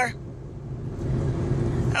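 Car cabin noise while driving: a steady low rumble of engine and road, growing louder about a second in.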